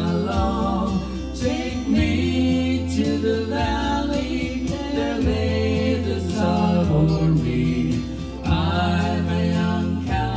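A man and a woman singing a slow melody together into handheld microphones, over an accompaniment with a steady low bass that changes note every second or two.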